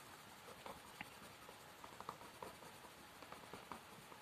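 Blue coloured pencil scratching faintly on workbook paper in short, irregular strokes while colouring in a picture.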